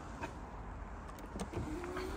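Volkswagen Tiguan Allspace's electric tailgate motor starting up about one and a half seconds in, a steady whine that rises slightly in pitch as the tailgate moves.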